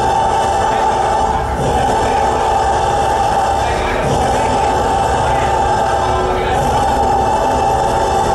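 Live metal band playing loudly: a dense, unbroken wall of distorted sound with a cymbal crash about every two and a half seconds.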